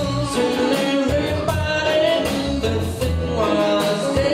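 Live band playing an instrumental passage: electric guitars, bass, drums, keyboards and horns, recorded from the back of a theatre on a small camera, so it sounds distant and roomy.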